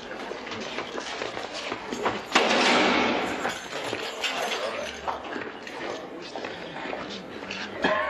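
A sudden loud bang about two and a half seconds in that dies away over about a second, like a heavy cell door slamming in a stone room. Fainter shuffling and scuffing are heard around it.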